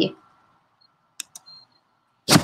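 Two quick sharp clicks about a second in, typical of a computer mouse clicking at the end of a slideshow, followed by a faint short high tone.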